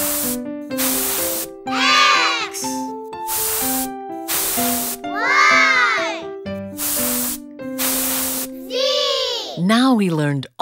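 Cartoon air-pump hiss effects in repeated short bursts, as for inflating balloons, alternating with three rising-then-falling squeaky sweeps, over a children's song backing with a steady melody.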